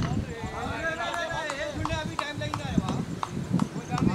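Cricket players' voices calling out on the field, with several sharp clicks in the second half.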